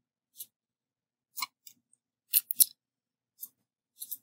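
Computer mouse clicking: a few single sharp clicks about a second apart, with two close together near the middle.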